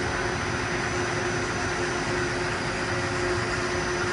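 Daewoo Puma 200MS CNC turn-mill center running with its live tooling switched on: a steady machine hum with a faint high whine.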